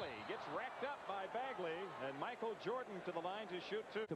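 Quiet play-by-play commentary from an old NBA television broadcast: a commentator talking steadily, low under the level of the surrounding reaction talk.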